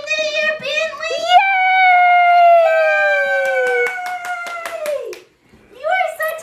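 Two high voices cheering with long, drawn-out calls that slide down in pitch and overlap, with quick hand clapping through the middle.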